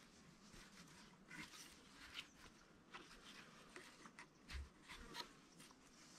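Faint rustling and scraping of a fibrous felt insulation strip as it is pulled and pressed by hand along a log, with a soft low thump about four and a half seconds in.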